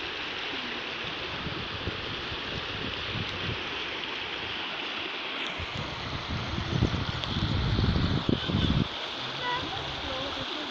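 Brown floodwater rushing over a submerged road and past the railing posts, a steady rushing noise. From about six seconds in, louder low rumbling comes in bouts for about three seconds.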